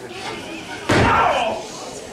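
A single loud smack of a strike landing between two wrestlers in the ring, about a second in, followed at once by voices reacting.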